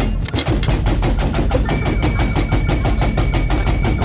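Background music driven by rapid, even percussion hits, about eight or nine a second. A steady high sustained tone joins in a little under two seconds in.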